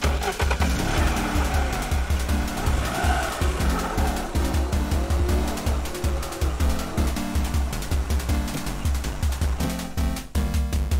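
Background music with a steady driving beat, with a car engine revving sound effect over it in the first few seconds.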